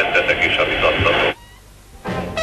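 A television commentator speaking in Hungarian over a narrow, radio-like broadcast sound, cut off abruptly about 1.3 seconds in, leaving only a faint hiss.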